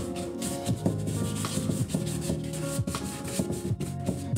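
Paintbrush scrubbing thinned acrylic wash across the painting surface in a run of loose, irregular strokes, a scratchy rubbing, over background music.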